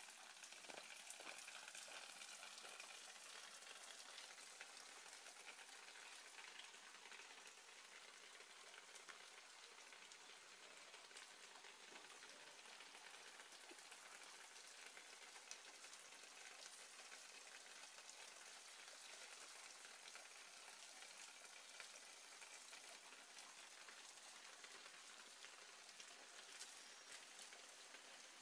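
Near silence: a faint, steady, fine crackling hiss with no distinct events.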